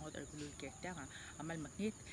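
A steady, high-pitched insect drone running without a break under a woman's speech.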